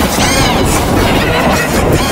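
Sung children's pop song, loud and continuous, heavily warped and distorted by added audio effects.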